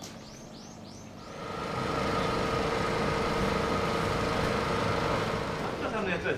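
A vehicle engine running. It builds up over about a second, then holds a steady drone with a constant pitch.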